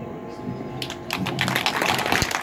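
Crowd applauding, with many separate hand claps, starting just under a second in.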